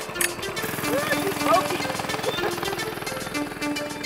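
Coleman CT100U mini bike's small single-cylinder four-stroke engine pull-started by its recoil cord, catching about half a second in and then running with a rapid, even pulse. Background music plays over it.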